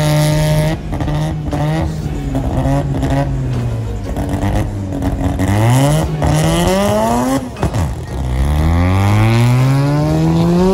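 Drag car engine held at steady revs on the start line, then revving up in rising sweeps and accelerating hard down the strip. There is a brief drop near the end, followed by a long climb in pitch.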